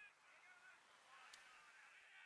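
Near silence: faint room tone with only very faint traces of sound.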